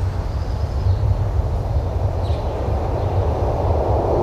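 A steady low vehicle rumble with a hiss that builds near the end, and faint high chirps twice.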